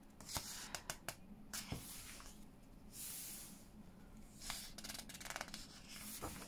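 Paper pages of a book being handled and turned: soft paper rubbing and sliding with a few light ticks, then a quick fluttering riffle near the end as a page is flipped over.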